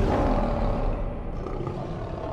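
A lion roar sound effect: one long roar that fades away over the two seconds.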